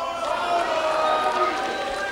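Audience in a hall cheering, many voices calling out at once.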